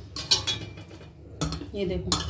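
A metal ladle knocking and scraping against the inside of a metal cooking pot while cooked rice is stirred: a few light clinks at first, then a busier run of knocks in the second half.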